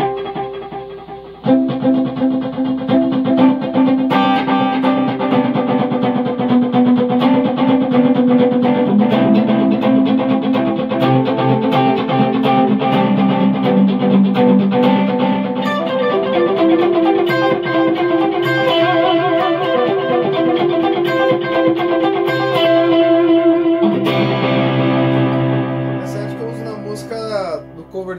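Electric guitar played through a TC Electronic G-System multi-effects floorboard: a melodic passage of ringing, overlapping notes that starts in earnest about a second and a half in, with lower, stronger notes near the end.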